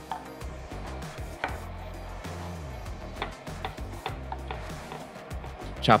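Chef's knife chopping pitted dates on a wooden cutting board: irregular sharp taps of the blade striking the board, over background music.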